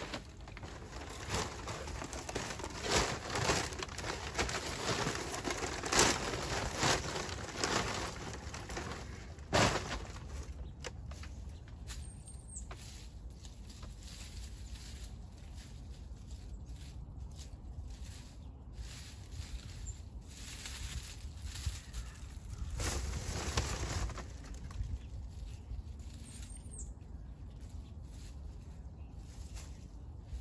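A paper yard-waste bag and dry clippings rustling and crackling as they are handled, loud for about the first ten seconds. After that come quieter, scattered rustles and small clicks as debris and soil are worked by hand, with one brief louder rustle about three-quarters of the way in.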